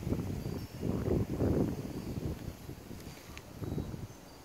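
Wind buffeting the microphone outdoors: a low, gusty rumble that swells and fades.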